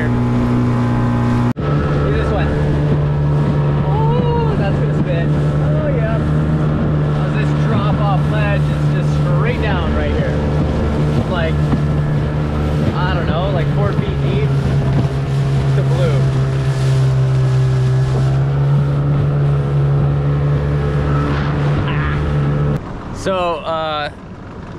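Outboard motor of a small open boat running steadily at speed, with wind and water rushing past. About a second and a half in, the engine note drops out briefly and comes back slightly higher. It falls away near the end.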